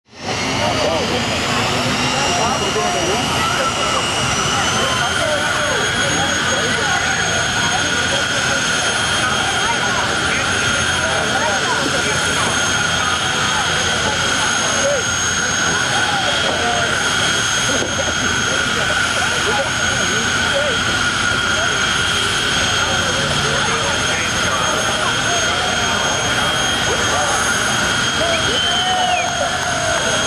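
Jet car's turbine engine running at the start line: a loud, steady whine that steps up in pitch about four to five seconds in, then holds. A crowd's chatter runs underneath.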